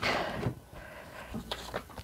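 Faint rustling and a few light taps of a deck of oracle cards being picked up and handled, with a brief soft patter of card contacts about one and a half seconds in.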